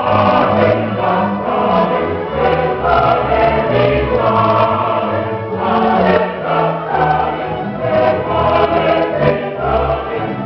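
Mixed choir singing a baroque piece with a string orchestra and keyboard continuo, the bass line moving in steps beneath the voices.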